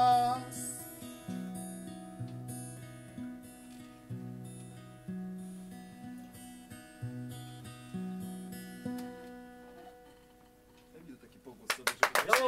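Steel-string acoustic guitar played alone after the last sung note, about one plucked chord or bass note a second over a changing bass line. The notes grow softer and the last one rings out and fades away about ten seconds in.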